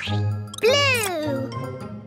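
Children's cartoon music with a cartoon character's wordless vocal sound over it, starting about half a second in, which rises briefly and then slides down in pitch over most of a second.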